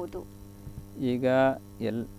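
Steady electrical mains hum on the audio, with short held vocal sounds from a person about a second in and again just before the end.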